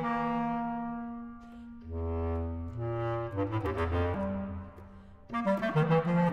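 Bass clarinet playing: a held note fades, then deeper sustained tones break into a quick climbing run about three seconds in. After a brief lull near the end, a burst of fast, short notes follows.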